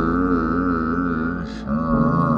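Background music: a held, wavering melody over a steady low drone, with a brief break about one and a half seconds in.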